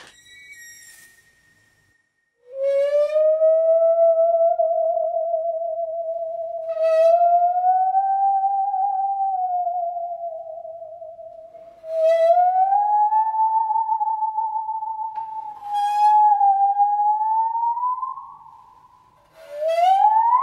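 A Sandviken Stradivarius handsaw bowed as a musical saw: long, wavering singing notes with vibrato that slide slowly upward in pitch. Each new bow stroke, about every four to five seconds, starts with a brief scratchy attack. A short high note and a pause of about a second come before the playing.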